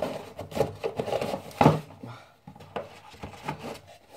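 Kitchenware being handled: a run of knocks and scrapes, the loudest a sharp knock about one and a half seconds in.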